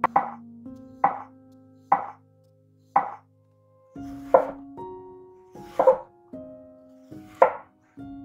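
Santoku-style knife slicing through a raw peeled potato and striking a wooden cutting board, about eight sharp cuts roughly a second apart, spacing out a little toward the end, over background music.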